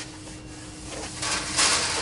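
A hand rubbing along a car's chrome front bumper, feeling the metal for dents: a soft rubbing hiss that starts a little past halfway and lasts under a second.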